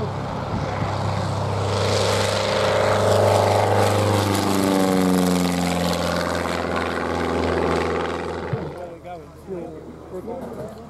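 Single-engine propeller light aircraft climbing out just after takeoff and passing low overhead. The engine and propeller grow louder, drop in pitch as it goes over, then fade away near the end.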